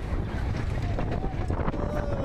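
Mine-train roller coaster running at speed: wind rushing hard over the microphone on top of the rumble of the cars on the track, with a few scattered clicks.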